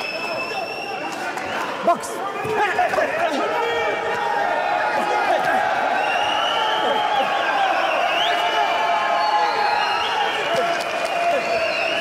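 Boxing crowd shouting and cheering, many voices overlapping, swelling about two and a half seconds in and staying loud.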